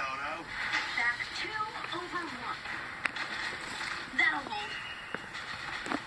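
Cartoon soundtrack played through a television speaker: short bursts of character voices over faint background music, with a sharp click about three seconds in and a brief high steady tone a little before five seconds.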